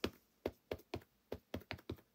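An ink pad dabbed repeatedly onto a clear acrylic rubber stamp to ink it: a series of light, irregular taps.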